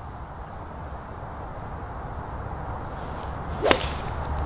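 A golf iron strikes a ball off the tee: one sharp crack near the end, over a steady low rumble.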